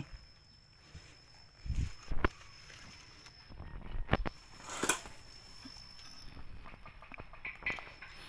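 A few scattered snaps and knocks with soft rustling as water-plant stems are picked by hand among the leaves. A faint, steady high tone runs underneath.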